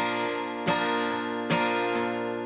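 Acoustic guitar, capoed at the third fret, strumming a G chord shape, with a new strum a little under every second and the chord ringing between strums.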